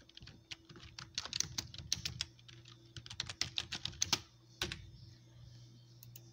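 Typing on a computer keyboard: a quick, irregular run of key clicks that stops about five seconds in.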